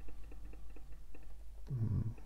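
Faint, quick, evenly spaced ticking, about six a second, over a low steady hum, with a short low voice sound near the end.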